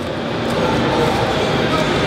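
Faint, indistinct speech over a steady background hiss, with no distinct knock or click.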